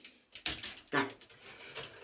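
Hard plastic toy parts clicking and scraping as a stiff neck-joint piece is forced onto a pin of a Transformers Devastator figure, with a sharp click about half a second in.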